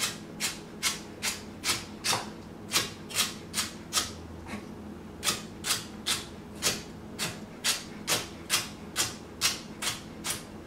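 Chef's knife chopping celery on a wooden cutting board: sharp knocks of the blade through the stalks onto the board, about two a second in an even rhythm, with a short pause around the middle.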